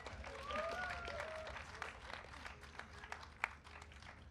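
Audience applauding, a spread of claps that thins out over the few seconds, with a faint voice under it early on.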